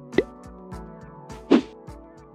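Logo-animation sound effects: two short pops that glide upward in pitch, one just after the start and a louder one about a second and a half in, over the faint tail of a music track.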